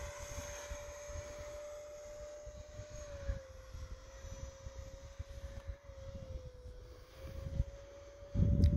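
Electric ducted fan of a radio-controlled model jet, a 50 mm FMS impeller on a 4S battery, flying throttled back: a faint, steady whine that sags slightly in pitch twice and comes back up.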